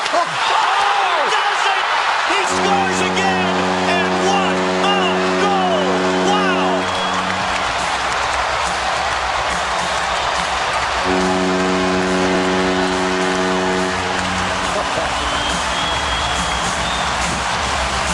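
Ice hockey arena crowd cheering after a goal, with the arena goal horn sounding in two long steady blasts, the first about two seconds in and the second about eleven seconds in.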